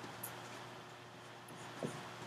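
Quiet room tone with a faint high tick about a quarter second in and a brief low knock near the end.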